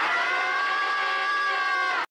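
A digitally processed, high-pitched held voice cry that rises briefly at the start, then holds one pitch for about two seconds and cuts off abruptly.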